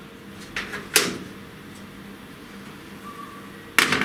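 Magnets being set down around a wooden board on a CO2 laser's steel honeycomb bed, clicking sharply: two lighter clicks about half a second and a second in, and a louder one near the end. A steady low hum runs underneath.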